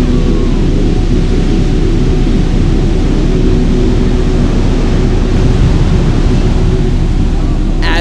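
Heavy ocean surf: large waves breaking and washing in, a loud, steady rushing noise with no distinct separate crashes.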